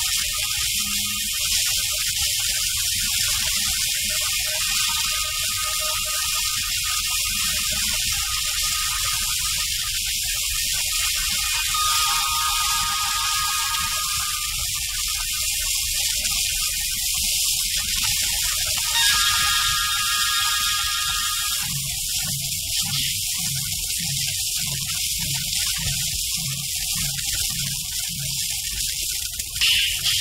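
Film background score: a melodic instrument plays held notes in short phrases, and in the second half a drum keeps an even beat of about two strokes a second.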